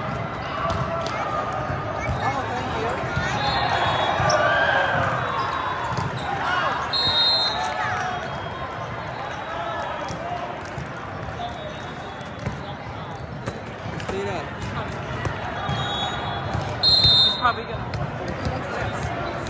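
Many overlapping voices of players and spectators in a large hall, with volleyballs being struck and landing in sharp smacks. A referee's whistle blows briefly about seven seconds in and again, loudest, near the end.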